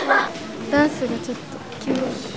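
Young women's voices in short spoken bursts, one of them rising sharply in pitch.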